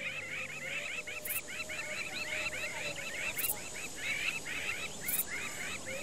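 Outdoor animal chorus: rapid, evenly repeated short chirping calls, about five a second, with faint very high-pitched pulses recurring every second and a half or so.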